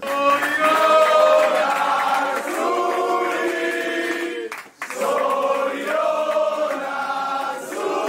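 A group of people singing together in chorus, holding long notes, with a brief break about halfway through.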